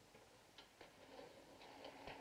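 Near silence: quiet room tone with a few faint, short clicks, the first about half a second in.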